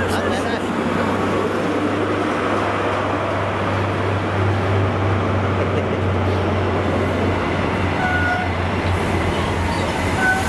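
Class 43 HST diesel power car and its coaches moving slowly past along the platform: a steady low engine hum over the rumble of the train rolling by.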